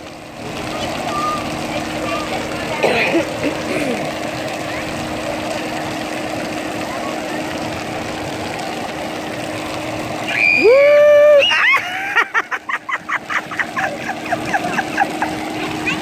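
A steady outdoor hum and noise bed, then about ten seconds in a loud, high, held shriek lasting about a second. It is followed by a few seconds of quick, rhythmic laughter.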